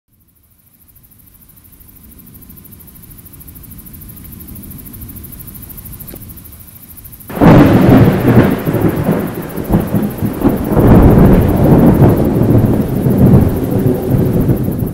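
Thunder: a low rumble slowly growing over the first seven seconds, then a sudden loud thunderclap about seven seconds in that goes on rolling and rumbling in swells.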